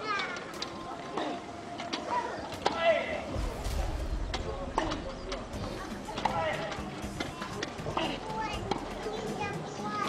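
Tennis ball struck back and forth in a wheelchair tennis rally: sharp pops from the rackets about a second or two apart, over chatter and children's voices from spectators.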